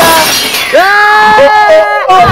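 Film sound effects: a glass-shattering crash, a long falling whistle, and a man's long held scream that starts a little under a second in.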